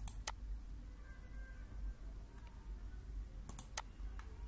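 Computer mouse button clicks: two sharp clicks right at the start and a quick run of three about three and a half seconds in, over a faint steady low hum.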